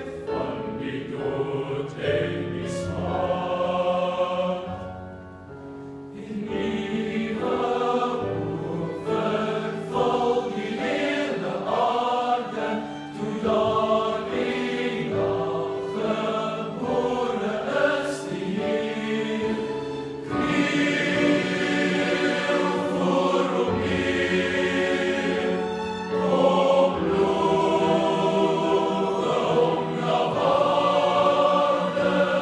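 Boys' school choir singing a Christmas carol in a large, echoing church, with low notes held steadily beneath the voices, likely from the organ. There is a short lull about five seconds in, and the singing swells louder about two-thirds of the way through.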